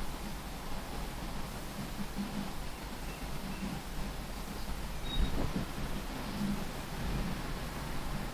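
Background inside a parked car with the engine off: a steady low rumble and hiss. There is a faint rustle or knock about five seconds in.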